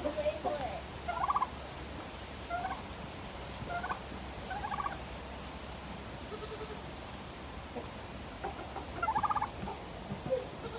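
Turkey gobbling: two long rattling gobbles, about a second in and again near the end, with a few shorter calls between.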